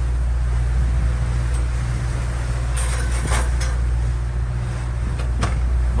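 Steady low engine drone aboard a catamaran under way. A few sharp clatters come from the oven door and the metal baking tin as the muffins are taken out and set on the stovetop, about three seconds in and again near the end.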